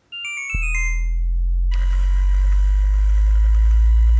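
Synthesized machine sound effect: a quick run of short electronic bleeps, then a deep steady hum that starts about half a second in and builds, marking a mask-printing machine starting up.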